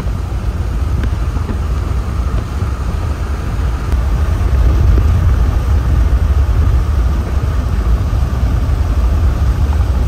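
Steady road and engine noise heard inside a car moving at highway speed: a deep, continuous rumble with a rushing hiss above it, swelling slightly about halfway through.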